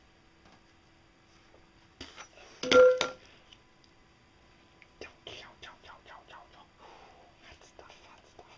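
A sharp plastic knock with a brief squeal about three seconds in, as a pipe is worked in a white PVC fitting. It is followed by a run of light plastic taps and clicks from handling the small fittings.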